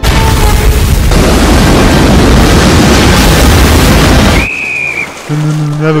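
A loud, steady roar of rushing noise from a film soundtrack that cuts off suddenly about four and a half seconds in, followed by a brief high, slightly falling tone.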